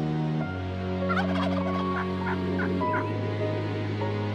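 A wild turkey gobbling, a rapid rattling call about a second in, laid over sustained background music chords.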